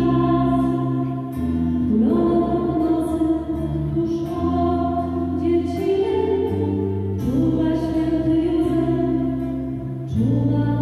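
Polish Christmas carol (kolęda) played live by a small band: female voices singing long held notes over acoustic and electric guitar, the chords changing every few seconds.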